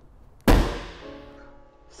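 The hood of a BMW X7 slammed shut: one loud slam about half a second in, ringing and fading away over about a second and a half.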